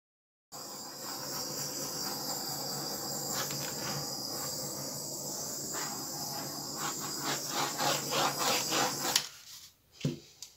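Hand rubbing and spreading wet acrylic pour paint over a canvas, in short strokes that come faster near the end, about two or three a second, over a steady high hiss and faint hum.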